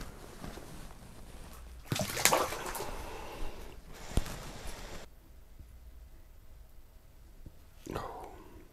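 A walleye released back down an ice-fishing hole: a splash and sloshing of water about two seconds in, then a single sharp click about four seconds in.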